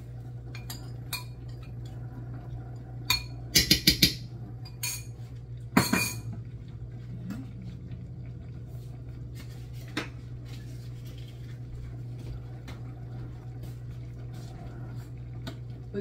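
Spoon clinking and tapping against a bowl and a large aluminum stockpot as chopped herbs are knocked into the pot: a few light clicks, a quick run of sharp taps about three and a half seconds in, and one louder ringing clink near six seconds, over a steady low hum.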